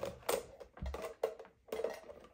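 Elastic bands being pulled off a clear plastic box: a handful of short sharp snaps and clicks of rubber on plastic, with a low knock of the box just under a second in.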